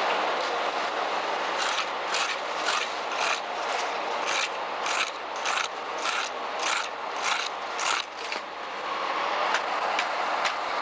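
A metal straightedge scraping over rough fresh concrete in regular strokes, about two a second, over a steady loud hiss. The strokes stop about eight and a half seconds in.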